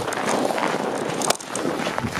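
Footsteps crunching on snow as several people walk, with rustling from the handheld camera moving.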